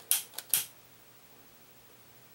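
Two sharp clicks about half a second apart, with a faint tick between them: a long-nosed butane utility lighter's trigger and igniter being worked to light it. Then only faint room tone.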